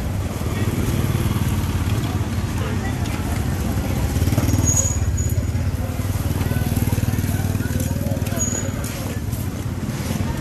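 Busy street-market ambience: people's voices and motorbikes, over a steady low rumble.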